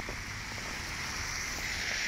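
Steady hiss of car tyres on a wet, slushy road, growing a little louder near the end as the car approaches.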